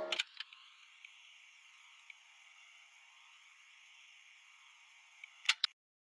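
A music track ending: the song cuts off just after the start, leaving a faint thin hiss for about five seconds, then two sharp clicks near the end before the audio goes dead silent.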